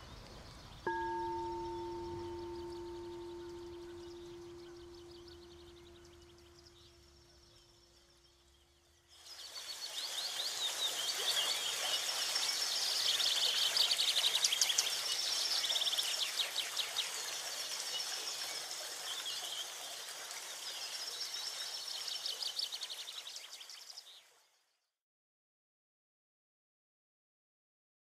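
A frosted quartz crystal singing bowl struck once, ringing with one low steady tone and fainter higher overtones that slowly fade over about eight seconds. About nine seconds in, a louder, dense shimmer of high chirps and chime-like tinkles takes over for about fifteen seconds, then stops suddenly.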